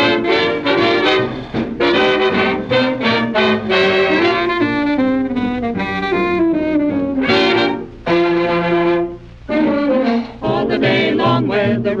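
Instrumental chorus from a 1940s swing-era record, brass (trombone and trumpet) carrying the tune, with a brief drop in level about nine seconds in.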